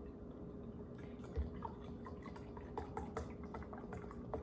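Sprite poured from a plastic bottle into a plastic pitcher of punch: a faint pour with scattered small drips and ticks.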